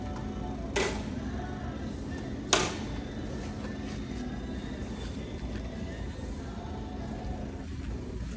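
Shop background of faint music and a steady low hum, with two sharp knocks about two seconds apart.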